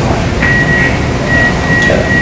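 Low rumbling room noise, with a thin steady high whistle coming in about half a second in and breaking off briefly near the middle.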